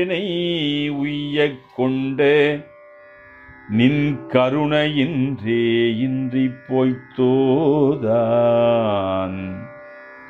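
A man singing a Tamil Shaiva devotional hymn in Carnatic style, with long held notes that waver and bend. Instrumental accompaniment runs under the voice. The singing pauses for about a second a little before the middle.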